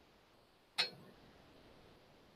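A single short clink about a second in: a glass set down on the table.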